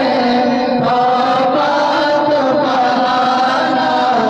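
Male voice chanting an Urdu naat, a devotional poem in praise of the Prophet, with long held and wavering notes.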